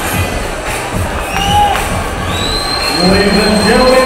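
Arena crowd cheering and shouting around an MMA cage, with a loud voice rising over the crowd noise about three seconds in.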